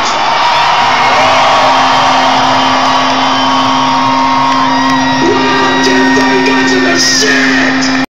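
Live bagpipes played through the PA in an arena. A steady drone comes in about a second in, and a changing melody line joins above it about five seconds in, over a cheering crowd. This is the sound of a bagpipe intro starting up.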